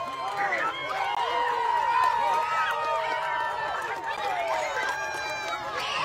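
A crowd of voices shouting and talking over one another, with no single clear speaker. A steady high tone runs through the middle few seconds.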